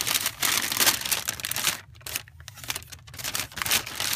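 Tissue paper inside a shoebox rustling and crinkling as it is folded back by hand. The rustling is dense and loud for the first couple of seconds, then comes in quieter, scattered crinkles, with one more loud rustle near the end.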